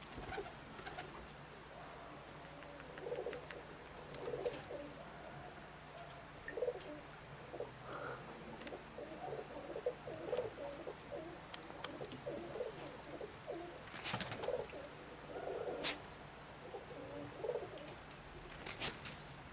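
Domestic pigeons cooing, faint low coos repeating throughout, with a couple of sharp clicks late on.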